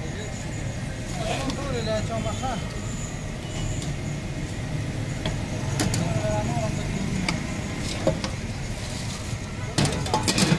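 Street-stall ambience: a steady low rumble, with faint voices in the background and a few sharp metal clinks near the end as utensils are handled at the fryer.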